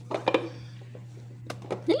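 Brief snatches of speech with a short click about a second and a half in, over a steady low hum.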